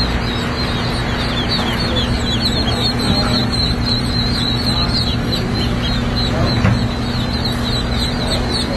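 A crowd of newly hatched Blue Swedish ducklings peeping without pause, many short, high, falling peeps overlapping, over a steady low hum.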